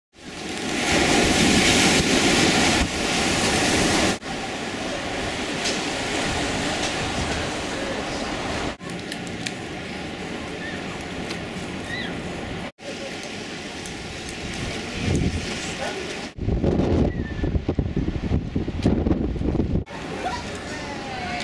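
Outdoor noise of wind on the microphone with crowd voices behind it, changing abruptly at several cuts. The first few seconds and the last few seconds are the loudest, with uneven gusty rises.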